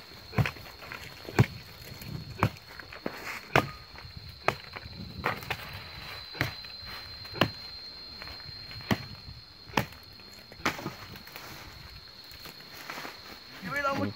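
Footsteps crunching and snapping through dry cut brush and twigs, a sharp crack every half second to a second, with a steady high whine underneath.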